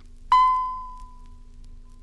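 Filmstrip record's advance signal: a single bell-like ding about a third of a second in, ringing out and fading over about a second and a half, the cue to move to the next frame. A faint low steady hum runs under it.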